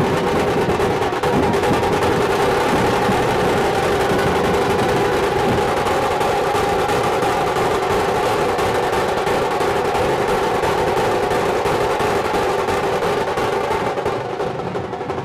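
Dhol-tasha troupe drumming: many large two-headed dhol drums beaten with sticks together with tasha drums, in a fast, dense, continuous rhythm at a steady loud level.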